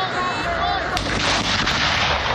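Artillery gun firing a ceremonial salute round about a second in: a sharp report followed by a rolling boom.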